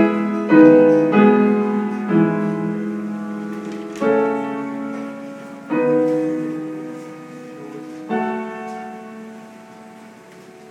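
Solo upright piano played slowly: chords struck every second or two, each left to ring and fade, with a longer gap before the last one about eight seconds in, which dies away.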